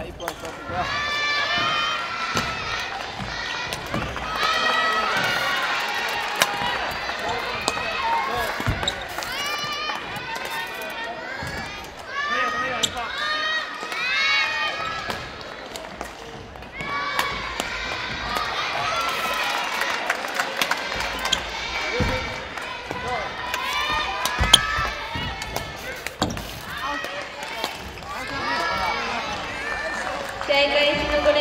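Busy gymnasium hall during junior badminton matches: many high children's voices calling and chattering over one another, with scattered sharp knocks of rackets striking shuttlecocks. One knock late on stands out as the loudest.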